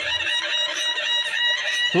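A rooster crowing: one long call held on a near-steady pitch.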